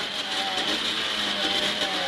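Rally car engine heard from inside the cockpit, running at a fairly steady pitch under an even hiss of road and tyre noise on a wet tarmac stage.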